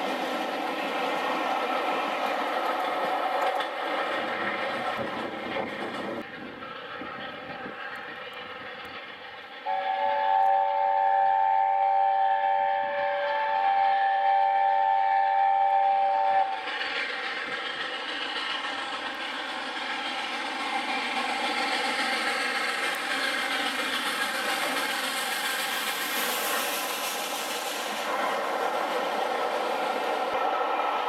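Coaches of a passenger train rolling past, then the chime whistle of LNER A4 Pacific steam locomotive 60009 sounding one long, steady chord of several notes for about seven seconds. Its running noise follows as it approaches, building towards the end.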